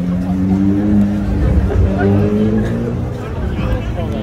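A vehicle engine running low and steady close by, loudest in the first three seconds, over the chatter of a street crowd.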